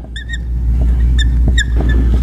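Dry-erase marker squeaking on a whiteboard as words are written: several short, high squeaks, a couple at the start and more after about a second, with light taps of the marker between them. A steady low hum runs underneath.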